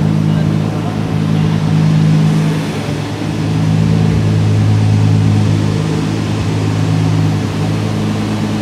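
Turbocharged VR6 engine idling steadily, with no revving.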